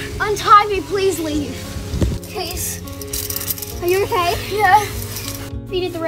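A child speaking a few lines over background music with long held chords.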